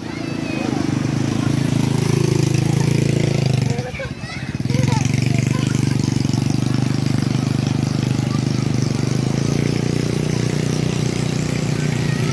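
A motor engine running steadily with a low drone, dropping away for about a second near the middle and then coming back.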